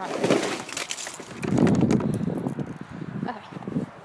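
Wind gusting over a phone's microphone: an uneven rush of noise that swells loudest around the middle and then eases off.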